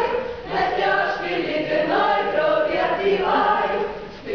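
A choir singing a song, many voices together in phrases, with a brief break between phrases about half a second in and another near the end.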